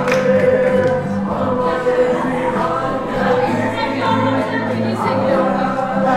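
A group of voices singing together in chorus, holding long sung notes.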